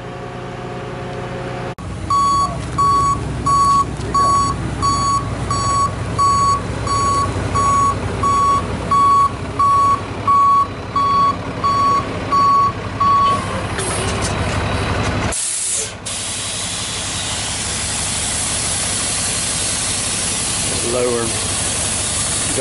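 A vehicle's backup alarm beeping steadily, about two beeps a second, over a running truck engine, stopping about 13 seconds in. Then the engine runs on steadily with a hiss.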